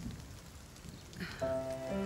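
Faint, light rain ambience, then background film-score music with sustained notes coming in about a second and a half in.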